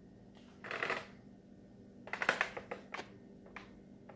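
A person stepping onto a digital bathroom scale: a brief rustle under a second in, then a quick cluster of rattling taps and clicks about two seconds in, and a couple of single clicks after.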